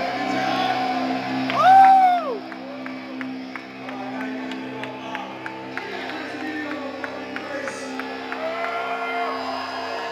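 Music ringing out in a concert venue with crowd noise, with a loud whoop from someone nearby, rising then falling in pitch, about two seconds in.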